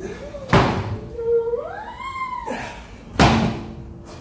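A heavy truck tyre flipped over and landing flat on a concrete floor: two heavy thuds about two and a half seconds apart. Between them a drawn-out tone rises and then falls.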